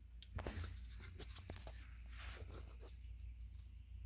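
Faint rustling and a few light clicks from a hand handling potted Nepenthes pitcher plants, over a steady low hum.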